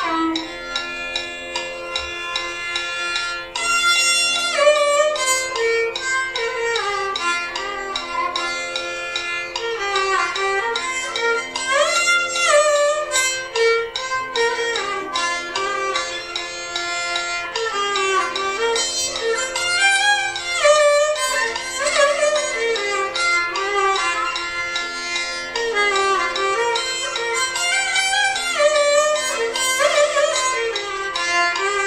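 Violin played in Carnatic style, a melody in raga Kapi with frequent sliding ornaments between notes. Beneath it a low held note returns every three to four seconds.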